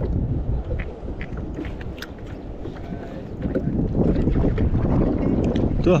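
Wind buffeting the microphone over the sea around a fishing kayak, a low rumble that grows stronger about halfway through, with a few light clicks scattered through it.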